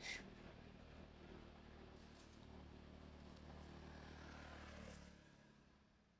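Near silence: faint steady low background hum with a few soft clicks, dying away about five seconds in.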